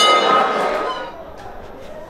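A boxing ring bell struck once, ringing clearly and dying away within about a second, over crowd chatter that then quietens.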